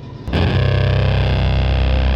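Film score: after a brief lull, a loud, low, sustained music drone comes in suddenly about a third of a second in and holds steady.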